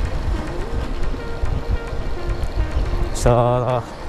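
Wind rushing over the microphone and road noise from a moving motorcycle, a steady low rumble, with faint background music under it. A man's voice comes in near the end.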